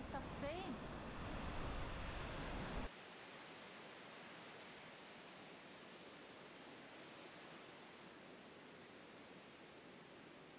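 Waterfall rushing: a steady, loud wash of noise with a few short gliding pitched calls over it near the start. About three seconds in it cuts off abruptly to a much quieter, steady faint hiss.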